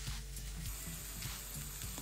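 Faint sizzle of diced onion, garlic, ginger and chilli frying in butter and oil in a non-stick pan, under quiet background music.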